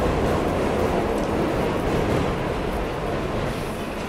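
A train running: a steady, loud noise from the wheels and carriage, easing off slightly near the end.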